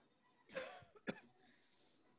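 A short, faint cough about half a second in, followed by a single sharp click.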